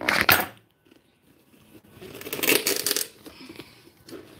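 A kitchen knife clatters down onto a wooden desk, a short metallic clatter. After a second of quiet, there is a second or so of rough rubbing and rustling as hands pull at the slit in a soccer ball.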